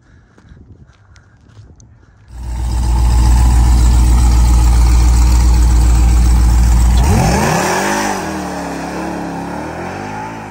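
A Ram TRX's supercharged V8 comes in suddenly and loud about two seconds in, held at steady high revs for several seconds as it spins the rear tyres in a burnout. Near the end the revs rise and fall and the sound eases off.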